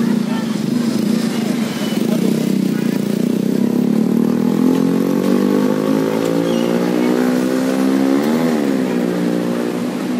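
A motor vehicle engine running and slowly rising in pitch over several seconds as it gathers speed, with a quick rev up and back down about eight seconds in, over a wash of street noise.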